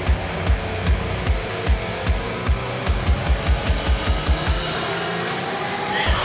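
Rock music: electric guitar over a drum kit. The kick drum beats about two and a half times a second, then doubles its pace about halfway through, and drops out shortly before the end.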